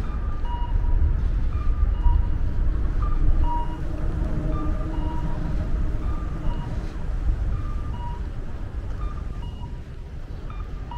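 Audible guidance signal of a Japanese pedestrian crossing, sounding for the green light: a two-note electronic call, higher note then lower, like a cuckoo, repeating about every second and a half. Under it is the steady rumble of road traffic beneath an elevated expressway.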